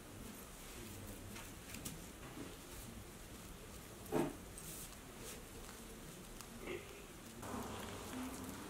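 Faint rustling of sequinned fabric as it is handled, with one louder rustle about four seconds in, over a low steady hum.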